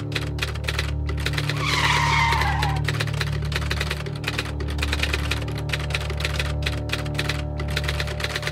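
Experimental noise soundtrack: a dense, rapid clicking over a steady low hum, with a loud falling screech about two seconds in.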